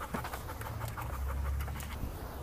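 Dog panting in quick, short breaths, about four or five a second, over a low rumble.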